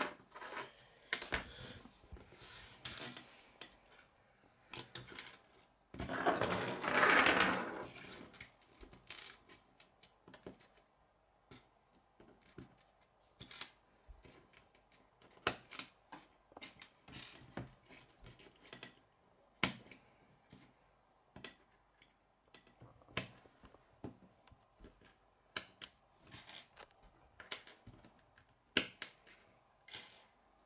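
Plastic K'nex pieces clicking as rods are snapped into connectors and set down on a wooden table: irregular sharp clicks and taps. About six seconds in comes a louder, noisier stretch lasting about two seconds.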